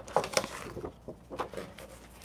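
Stiff black cardstock handled and slid across a plastic scoring board: a few faint taps and rustles.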